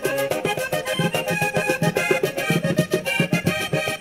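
Vallenato in paseo rhythm: a diatonic button accordion plays an instrumental passage over a fast, steady percussion beat.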